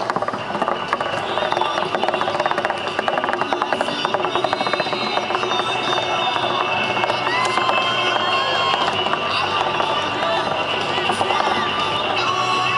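Crowd voices mixed with music playing, the hubbub of a busy outdoor gathering.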